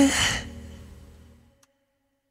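The end of a pop song: a held sung note stops, a breathy exhale follows, and the last of the music fades out to silence about a second and a half in.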